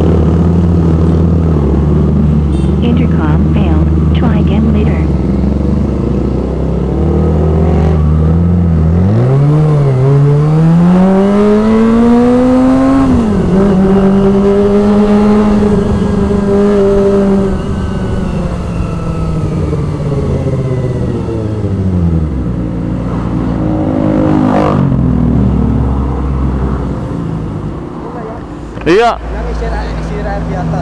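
Motorcycle engine idling, then pulling away. Its pitch climbs for about four seconds, drops suddenly at a gear change, holds steady while cruising, then falls away as the bike slows and settles back to idle near the end.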